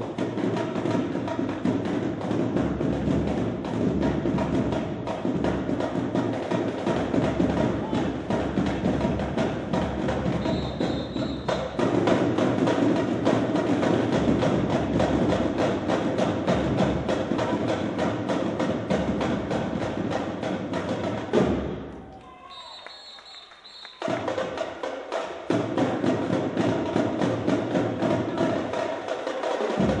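Live marching drumline playing a fast, driving cadence on snare drums with a low drum beat underneath. The drumming stops abruptly for about two seconds late on, then comes back in.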